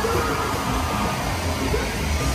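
Live afrobeats concert heard through a phone: loud stage music and crowd noise blur together into a dense, bass-heavy rush with no clear breaks.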